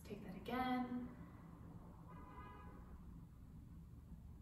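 A woman's voice: a short, held vocal sound about half a second in, and a fainter one about two seconds in, over quiet room tone.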